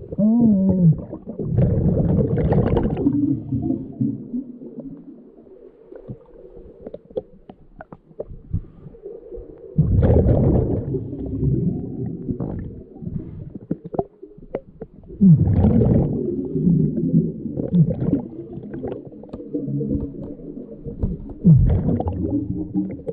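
Scuba regulator breathing heard underwater: loud surges of exhaled bubbles rumbling and gurgling every several seconds, with quieter breathing and bubbling between them.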